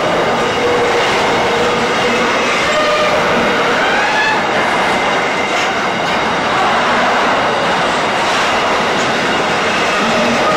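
Container wagons of a long freight train rolling past close by: a steady, loud rumble of wheels on rail, with wavering squeals from the wheels that come and go.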